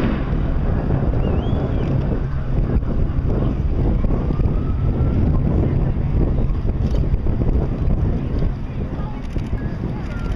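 Wind buffeting the microphone in a heavy, steady low rumble, with faint voices of people close by.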